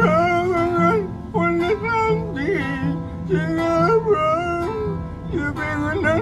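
A man singing a Thai pop song over acoustic guitar, in short held phrases in a voice that sounds like Scooby-Doo.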